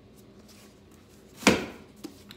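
A single sharp thud about one and a half seconds in, the loudest sound here: a hardcover book set down on a hard table top. Otherwise quiet room tone.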